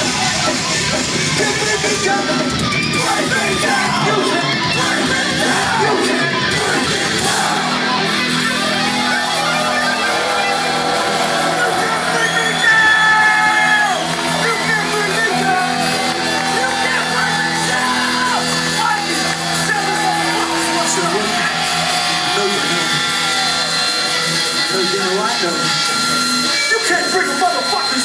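Rock concert crowd shouting and singing along, with sustained electric guitar and bass notes ringing from the stage.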